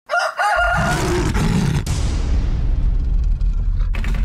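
Intro sound effects: a short crowing call that steps up and down in pitch, then a deep rumble and whoosh. The hiss of the whoosh thins out over the next two seconds while the low rumble goes on.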